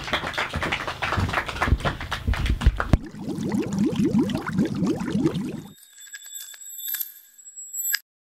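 Rustling and knocks as people get up from wooden folding chairs and walk off a stage. About three seconds in, a logo sound effect takes over: a fast run of short rising tones, then a bright ringing chime with a few clicks near the end.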